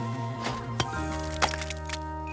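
Cartoon sound effect of a mallet driving a chisel into stone: a few sharp cracks over background music with held notes.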